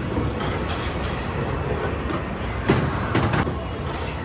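Roll-a-ball carnival race game in play: balls rolling and knocking on the lanes over steady arcade noise, with a run of sharp clacks about three seconds in.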